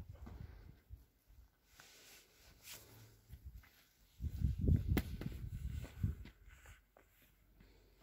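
Footsteps and garden-tool handling on loose soil: a cluster of low thuds for about two seconds midway, with one sharp click among them.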